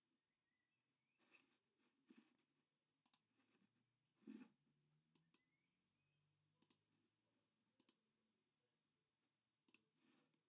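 Near silence with faint computer mouse clicks, several of them in quick pairs, and a soft low thump about four seconds in.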